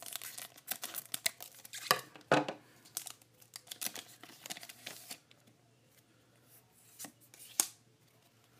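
A foil Pokémon card booster pack wrapper being torn open and crumpled by hand, with a quick run of crackly rips and crinkles over the first five seconds. Two sharper crackles come near the end as the cards are slid out of the wrapper.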